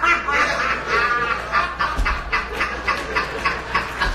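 A person laughing hard in a long, quick run of short voiced pulses.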